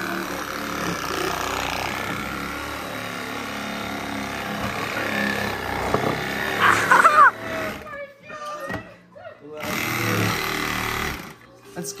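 Milwaukee cordless reciprocating saw cutting through a snowmobile's plastic snow flap, running steadily for about seven seconds, then stopping a couple of times before it runs again briefly near the end.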